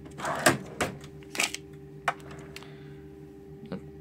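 A few scattered clicks and taps from fingers working a bus's on-board ticketing terminal, over the bus's steady low hum.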